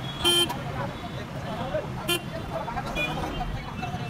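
Two short vehicle horn toots, the first about a quarter second in and the second, briefer, about two seconds in, over steady market chatter.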